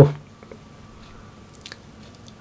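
A man's voice trailing off at the start, then a quiet pause with a few faint short clicks about one and a half seconds in.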